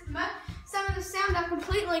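A voice holding sung notes, with a regular low thump beneath it about two to three times a second.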